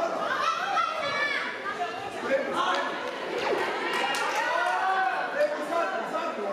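Several people talking and calling out at once in a large hall, the voices overlapping into indistinct chatter, with a few sharp knocks about halfway through.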